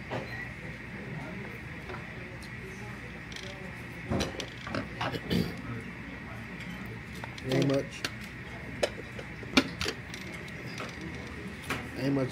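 Scattered sharp clicks and clinks of a spoon, sauce cup and dishes at a dining table, over a faint steady hum. A short murmured voice comes about seven and a half seconds in.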